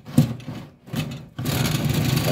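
Aluminium egg-tray rack of a wooden egg incubator being slid out by hand, scraping and rattling in its runners, with a sharp knock at the start and steadier scraping in the second half.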